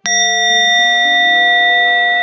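A Buddhist bowl bell struck once, ringing on with several clear, steady tones that slowly fade, marking one prostration in the recited liturgy.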